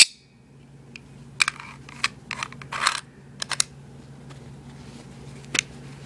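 Metal clicks and light scraping from the magazine of a Denix Luger P08 replica pistol being handled and pushed part way into the grip. There is a sharp click at the start, a run of short clicks about a second and a half to three and a half seconds in, and one more click near the end.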